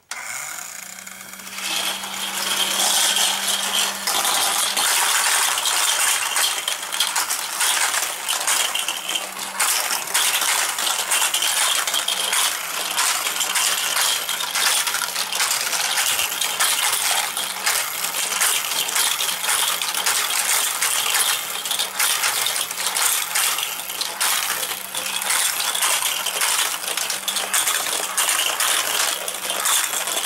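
Many tiny Micro Drifters toy cars rolling on their ball-bearing undersides down a plastic gravity track: a continuous dense clatter of small clicks and rattles that starts quieter and fills in about two seconds in.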